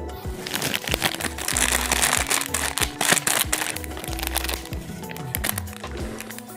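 Plastic snack-cake wrappers crinkling and crackling as the packets are picked up and handled, loudest in the first half, over background music with a repeating bass beat.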